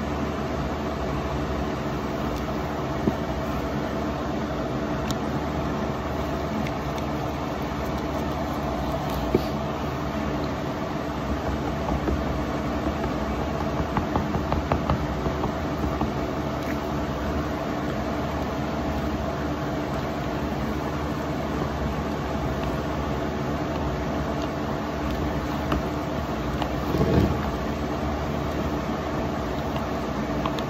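A steady machine hum runs throughout, with soft rhythmic scraping from a wooden stick stirring thick fairing compound in a plastic tub, clearest about halfway through.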